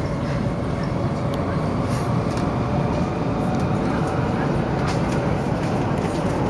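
Cabin noise inside a running Taiwan High Speed Rail 700T train: a steady low rumble with a few faint ticks.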